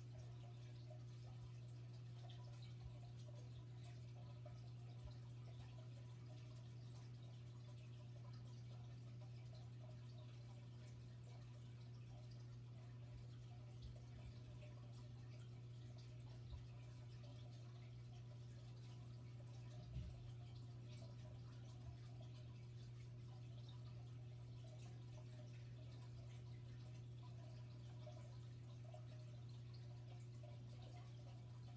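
Near silence: room tone with a steady low hum and a few faint, scattered ticks, the clearest about twenty seconds in.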